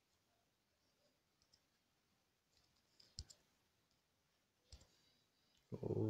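Near silence: room tone with a few faint short clicks, a pair about three seconds in and another near five seconds.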